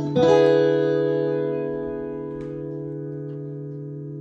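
Fender Stratocaster electric guitar playing a chord, struck once just after the start and left to ring, fading slowly: the song's final chord.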